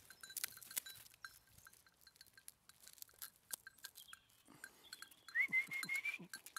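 Goats at close range: scattered small clicks and crunches, like grazing and chewing. Near the end comes a high, thin call that rises and then holds for under a second.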